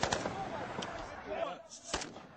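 Crowd of men shouting, with a few sharp cracks of rifle shots fired into the air: a quick cluster at the start and another crack near the end.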